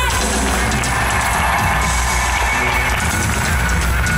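Live band music played loud through an arena PA, with a heavy steady bass, and the audience cheering over it.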